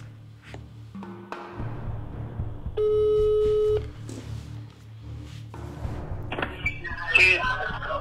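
Phone ringback tone heard over speakerphone while a call connects: one steady, even ring lasting about a second, starting about three seconds in, with soft background music underneath. From about six seconds in, a busier wavering sound builds up.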